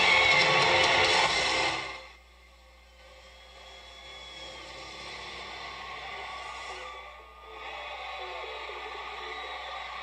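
Recorded music from a phone playing through the Zenith R99 boombox's speakers via its line-in. It is loud at first, drops suddenly to much quieter about two seconds in, then slowly gets louder again.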